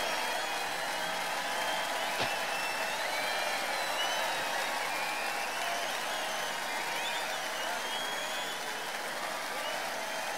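Large open-air festival crowd applauding, with cheers and shouts mixed in; the applause eases off slightly at first, then holds steady.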